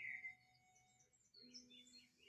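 Near silence: faint sustained low notes of soft background music come in about halfway through, with a few faint high chirps like birdsong.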